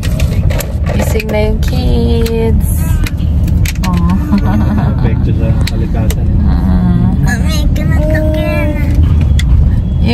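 Steady low rumble of a car's engine and road noise heard inside the cabin while driving, under people's voices talking.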